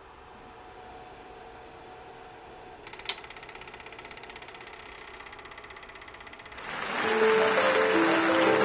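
Super 8/8 mm film projector: a faint motor hum, then a sharp click about three seconds in and the projector running with a fast, even mechanical clatter. Loud music takes over near the end.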